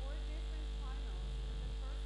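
Steady low electrical hum with a buzz, like mains hum on a sound line, with faint distant voices over it.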